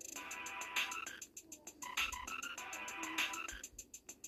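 Croaking sounds repeating in a steady loop, with a sharp accent about every 1.2 seconds.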